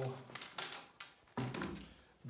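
A few light taps and a dull thunk from a white PVC soaking tube being handled at its capped top.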